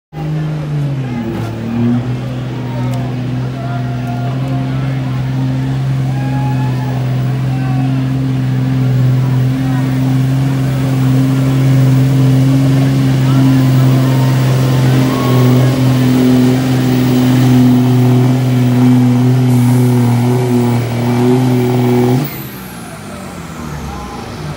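Dodge Ram pickup's Cummins straight-six diesel pulling a weight-transfer sled at full throttle: a loud, steady high-rev engine note that sags slightly in the first second under the load and then holds. The note falls away abruptly about 22 seconds in, as the pull ends.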